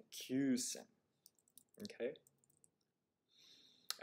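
A few faint clicks, then a sharper single click near the end: a computer mouse click that moves the lesson's slides on. A man's voice says a short word early on and "okay" partway through.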